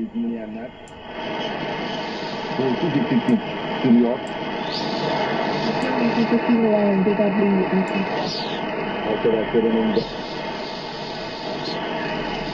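A shortwave voice transmission received on a home-built single-tube 6J1 SDR receiver and played through the PC's SDR software. A voice comes through a narrow, hissy radio channel over steady band noise.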